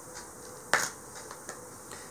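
A single sharp click about two-thirds of a second in, over faint room tone.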